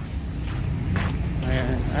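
Uneven low rumble of wind buffeting an outdoor microphone, with faint voices of people talking in the background during the second half.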